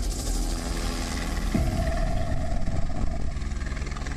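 Helicopter in flight: steady rotor and engine noise.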